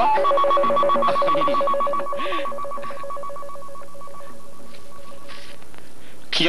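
A telephone ringing with a fast warbling trill, in one long ring of about five seconds that stops shortly before a man speaks.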